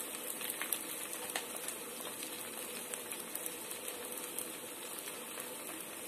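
Chicken pieces frying in shallow oil in a metal pan, a steady sizzle with scattered small pops and crackles.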